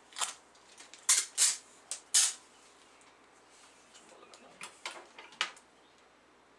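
Packages being wrapped by hand: a handful of short, sharp rustles and crinkles of paper, loudest in a cluster about one to two seconds in, with a few fainter ones near the end.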